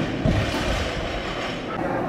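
Loaded barbell with rubber bumper plates dropped from the hips onto the lifting platform: a low thud and rattle in the first second, over the steady noise of a busy training hall.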